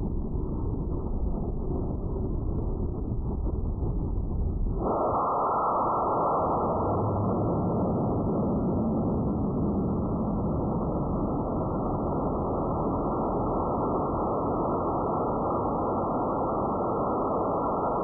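O-class high-power rocket motor firing, heard through the onboard camera's audio slowed eightfold, so it comes across as a deep, dull rush with no highs. A low rumble swells suddenly into a louder, fuller, steady rush about five seconds in as the motor comes up to full thrust.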